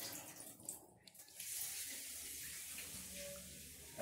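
Water running from a kitchen tap into the sink, a faint steady hiss that dips briefly about a second in.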